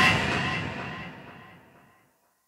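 The ending of an instrumental karaoke backing track: the last sounds, with faint tones gliding slowly upward, fade out over about two seconds.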